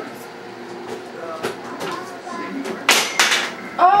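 Low, indistinct chatter of small children and adults in a room, with a brief, louder sharp burst about three seconds in.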